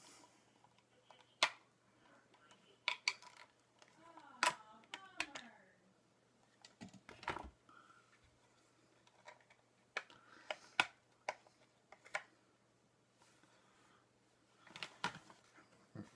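Mail package being unwrapped by hand: scattered sharp clicks and crinkling of paper and plastic wrapping, several seconds apart.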